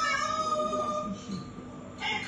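Amazon parrot singing: one long held note that trails off about a second in.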